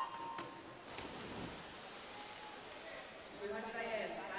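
Electronic start signal: a single short beep right at the start sends the swimmers off the blocks, followed by faint splashing and hall noise as they dive in. A voice comes in near the end.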